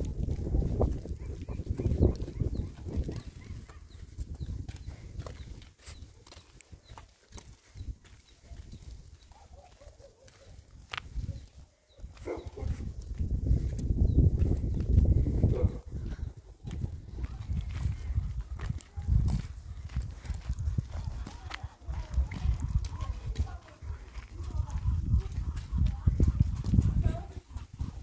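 Footsteps on a dirt and gravel lane, with wind gusting on the microphone in low rumbling swells that ease off for a few seconds in the middle.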